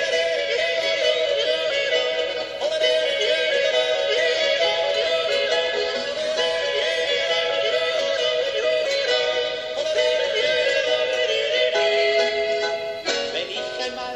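A man yodelling the refrain of an Alpine folk song over musical accompaniment, holding and stepping between high notes; the yodel breaks off about a second before the end.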